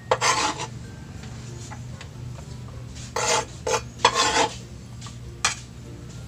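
Kitchen knife scraping chopped food off a bamboo cutting board in several short strokes: one just after the start, a cluster of three between about three and four and a half seconds in, and a brief one near the end.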